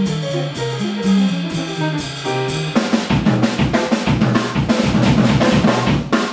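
Live jazz combo playing: a guitar solo line over a swung ride-cymbal beat, then about three seconds in the drum kit takes over with a busy drum break on snare and bass drum.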